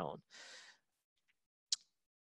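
A person breathing in between sentences, then near silence broken by one short click near the end.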